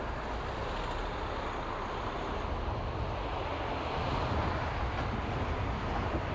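Car driving at low speed through a town: steady road and engine rumble with a noisy hiss, getting a little louder in the second half.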